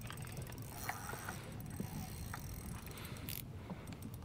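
Spinning reel being cranked to retrieve line, a faint mechanical whir with small ticks from the gears, over a steady low hum.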